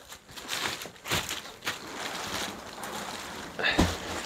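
Rustling of fabric and loose plastic wrapping as a compressed gel memory foam mattress topper is unfolded and handled, with a few soft knocks and a louder thump near the end.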